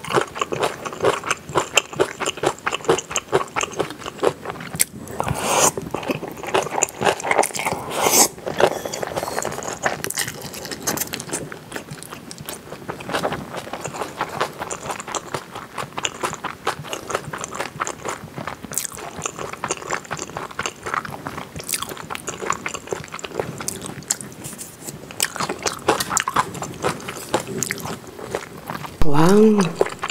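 Close-miked chewing of a mouthful of spicy kimchi pasta: a dense, irregular stream of small mouth clicks and smacks.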